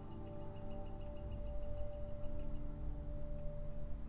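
A steady hum with one held mid-pitched tone over a low rumble, with no other events.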